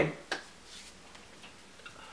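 The last of a man's spoken word, then a pause of quiet room tone with a short sharp click about a third of a second in and a few faint ticks near the end.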